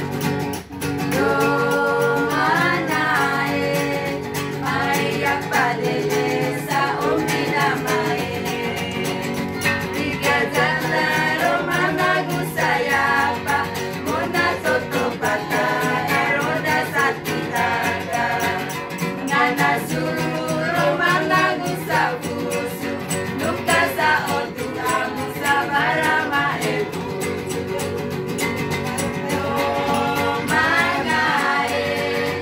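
A group of voices, mostly women's, singing a song together in unison, accompanied by a strummed acoustic guitar.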